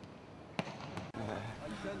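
A volleyball smacks sharply in a gym hall about half a second in, with a fainter smack just after. Voices take over from just past a second.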